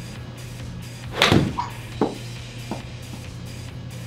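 Golf club striking a ball off a hitting mat into a simulator screen: one loud, sharp smack a little over a second in, followed by two fainter knocks as the ball drops back and bounces. Background music plays underneath.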